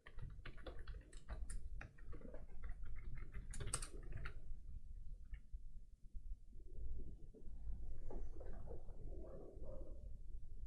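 Computer keyboard typing: a quick run of key clicks over the first four and a half seconds or so, then a few scattered clicks and a softer, muffled sound near the end.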